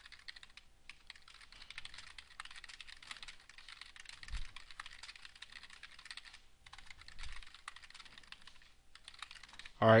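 Computer keyboard typing: a fast, fairly faint run of key clicks, breaking off briefly about six and a half seconds in, then going on in shorter runs.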